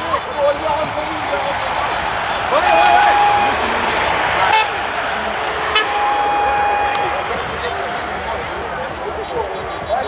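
Two blasts of a vehicle horn from a passing caravan truck, a short one and then a longer one, over a steady wash of outdoor noise and voices.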